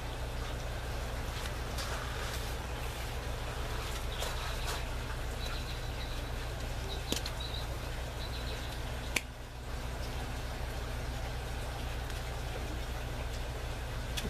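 Aquaponics grow-tower water system running: a steady low hum under an even wash of trickling water. A sharp click comes about nine seconds in.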